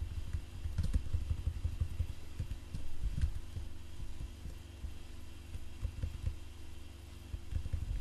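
Irregular clicking of computer keyboard keys as code is typed and copied, over a steady low electrical hum.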